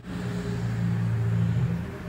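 Low, steady rumble that eases off slightly near the end.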